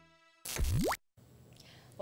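The last of the intro music dies away. Then a short electronic sound effect sweeps quickly upward in pitch for about half a second and cuts off sharply, followed by faint room noise.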